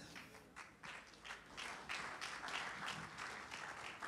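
Faint applause from a congregation: a dense patter of many hands clapping, growing a little louder about a second and a half in.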